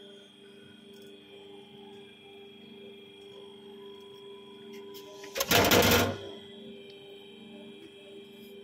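Murukku-making machine running with a steady hum and a thin high whine. About five and a half seconds in, a loud rushing noise bursts out for under a second.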